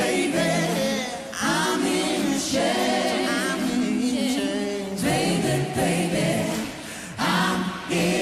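A man and a woman singing a duet live, in long held phrases with short breaks between them, over sparse backing with no drum beat.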